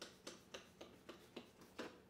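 Trigger spray bottle of glass cleaner being squirted in quick succession: about seven short, faint spritzes, roughly four a second.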